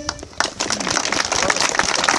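Outdoor crowd clapping, starting about half a second in, just after the singing and instruments stop.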